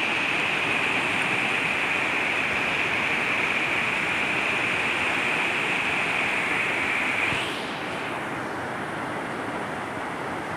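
Floodwater rushing through a breach in a river embankment: a loud, steady roar of fast, turbulent water. About seven and a half seconds in it drops a little quieter and duller.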